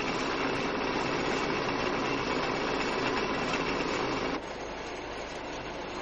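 Steady machinery-like noise with no distinct rhythm or pitch. It drops abruptly to a quieter level about four and a half seconds in.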